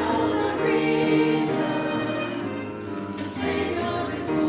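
A small mixed choir of men's and women's voices singing a Christmas piece in sustained notes, with grand piano accompaniment.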